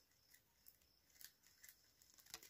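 Near silence, with a few faint clicks and ticks of plastic craft wire strands being handled and tucked through a woven wire ball.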